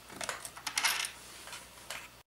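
Light metallic clinks and clicks, several scattered through the two seconds, from M8 nuts and washers being turned and handled on the steel threaded rods of a 3D printer frame.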